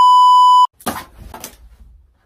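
A loud, steady single-pitch test-tone beep, the TV colour-bars tone, that cuts off suddenly about two-thirds of a second in.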